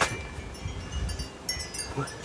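Small wind chime ringing with thin, light tones, with a sharp slap at the start as the exerciser drops onto the brick patio.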